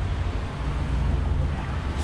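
Steady low rumble of wind buffeting a bicycle-mounted action camera's microphone, over outdoor street background noise.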